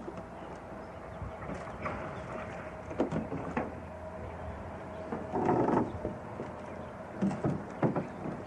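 An aluminum canoe being worked through a logjam: scattered hollow knocks on the hull, and a longer scrape a little past the middle.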